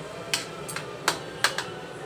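Metal ladle stirring pork in a wok, knocking and scraping against the pan in about five sharp clinks.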